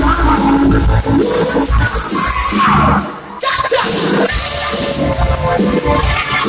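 Live band playing loud music, with a sudden short break about halfway through before the band comes back in.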